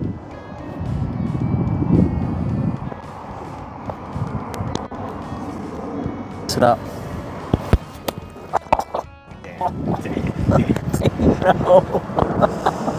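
Background music, with the sharp click of an iron striking a golf ball between about six and eight seconds in.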